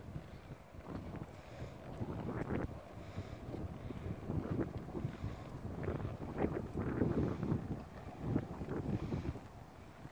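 Wind buffeting the microphone, with irregular dull thuds of a horse's hooves trotting on soft, muddy ground.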